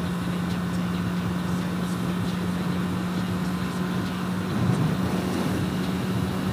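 2020 Honda CB650R inline-four engine running at a steady cruise, a constant hum under heavy wind and road noise picked up by the helmet-mounted camera. The engine note wavers briefly about four and a half seconds in.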